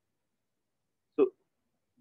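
Near silence, broken about a second in by one short spoken word, "so".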